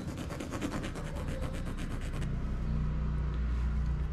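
A pencil scratching across canvas in quick, even hatching strokes, about ten a second, which stop about two seconds in. Under it runs a low steady rumble that grows louder in the second half.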